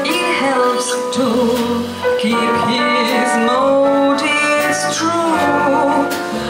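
A small jazz combo of grand piano, acoustic bass guitar and drums playing a jazzy song live, with a melody line over the accompaniment.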